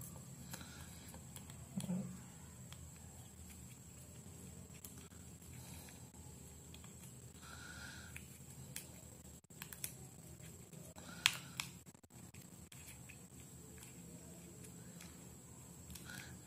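Faint clicks and light scrapes from the small plastic casing of a bike rear light as it is fitted back together by hand, with a sharper click about 11 seconds in, over low room hiss.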